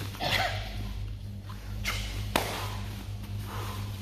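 Swishes, scuffs and short sharp thuds of bodies and feet moving on a plastic-covered training mat during a grappling move, with three louder impacts about a third of a second in, near two seconds and soon after. A steady low electrical hum runs underneath.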